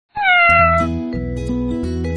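A cat's single meow, falling in pitch over the first second, as background music starts up beneath it.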